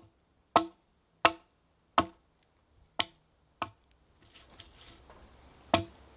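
Bushcraft axe chopping into wood: sharp, clean strikes at a steady pace, about one every two-thirds of a second. After a pause filled with quieter rustling, one more strike lands near the end.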